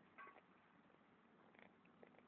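Near silence, with a faint brief sound about a quarter second in and another near the end.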